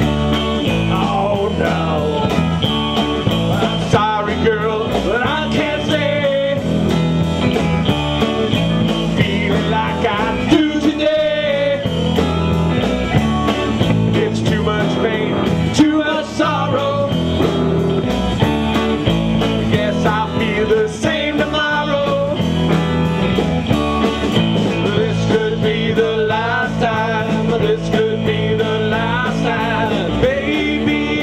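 A blues band playing live on electric guitars and a drum kit, with a steady beat on the cymbals.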